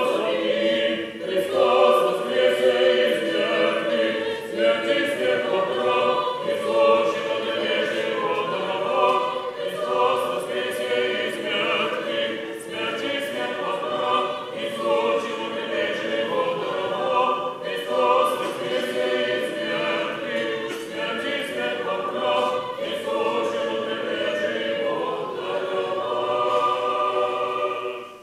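Orthodox church choir singing an unaccompanied liturgical hymn of the Easter service, many voices in harmony. The singing fades out right at the end.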